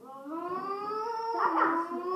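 A child's long, drawn-out howling voice. It rises slightly in pitch, then steps down about one and a half seconds in and carries on.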